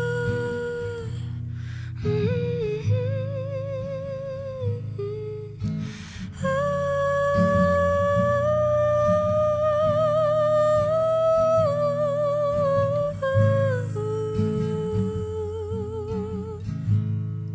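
A woman humming a slow wordless melody in long held notes with vibrato, over a Taylor acoustic guitar played softly underneath.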